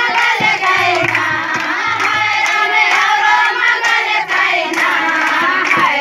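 A group of women singing a folk song together while clapping their hands in rhythm.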